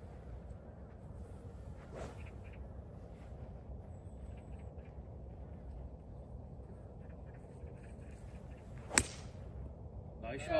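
A 3-wood striking a golf ball off the tee, a single sharp crack of the clubface on the ball about nine seconds in, over low steady background noise. The shot is struck cleanly and well.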